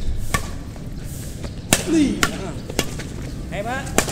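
Badminton rackets striking a shuttlecock in a fast rally. A series of sharp hits comes in quick succession, about half a second apart through the middle of the stretch.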